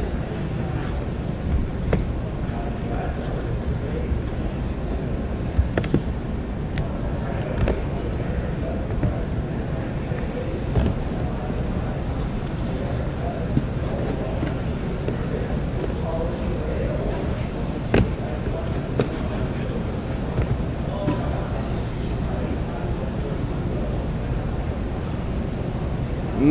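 Steady low background hum with a few sharp light clicks scattered through it and faint, indistinct voices now and then.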